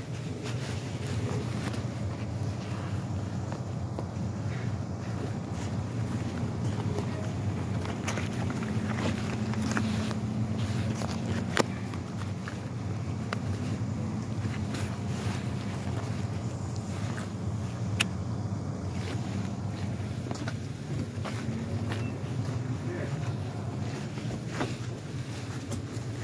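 Steady low rumble of car engines idling and moving in a parking lot, with two sharp clicks, one near the middle and one about two-thirds of the way through.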